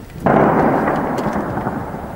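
Shell explosion in heavy shelling: a sudden loud boom about a quarter second in, followed by a long rumble that fades slowly.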